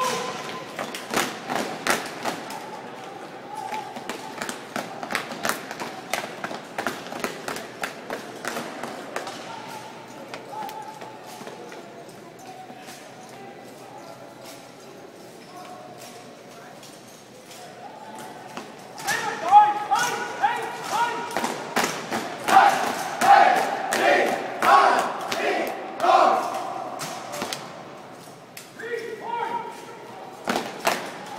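A drill team's routine on a hard floor: many sharp stomps and slaps, with shouted voices calling along. It is quieter through the middle, then the stomps and voices are loudest from about 19 s to 27 s.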